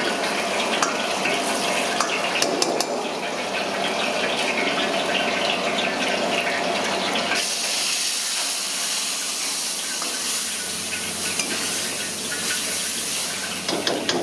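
Oil sizzling in a wok over a gas burner as a metal spatula stirs greens and garlic, with sharp scraping clicks. About seven seconds in, it turns to a steadier, higher hiss as the wok flares up.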